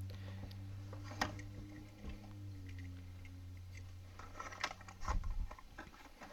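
Cardboard blister card and plastic blister packaging of a diecast toy car being handled: a click about a second in, another near two seconds, and a cluster of light clicks and rustles near the end, over a steady low hum.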